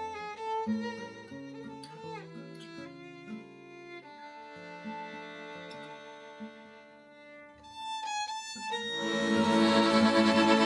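A small acoustic band plays a gypsy tune live: violin, accordion, acoustic guitar and upright bass. The violin leads the melody with vibrato and sliding notes. The playing thins out in the middle, then the whole band swells louder near the end.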